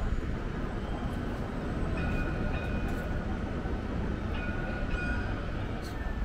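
Steady low rumble of open-air city ambience, with two brief high-pitched tones about two seconds and four and a half seconds in.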